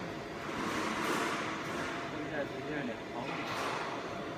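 Steady workshop background noise with faint, indistinct voices in the distance and two brief swells of hiss.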